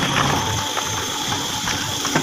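JCB backhoe loader bucket scraping and dragging stony soil, a dense, continuous rattle and crackle of grinding stones and steel, with a thin steady whine above it.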